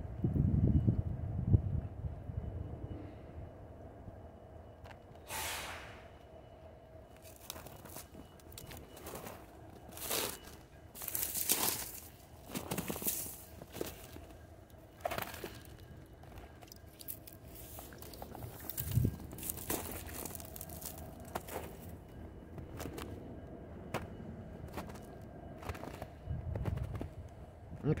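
Footsteps crunching through crusted snow and dry brush, with sharp crackles and snaps of twigs every few seconds. Underneath is a faint steady rumble and hum from a freight train rolling across a steel truss bridge.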